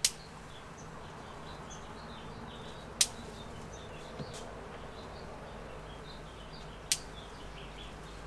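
Hand snips clicking shut three times, a few seconds apart, as hop cones are cut from the bine. Faint high chirps sound in the background.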